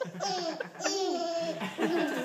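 Baby giggling in a string of short, high-pitched laughs.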